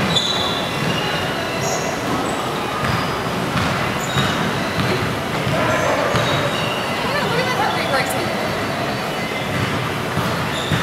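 Elliptical cross-trainers running: a steady mechanical whirr and rumble of flywheels and pedal linkages, with faint voices talking underneath.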